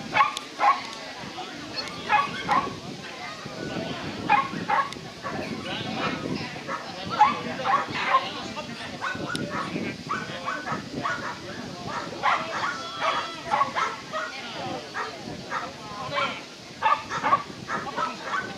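A dog barking repeatedly in short, sharp barks, scattered through the whole stretch.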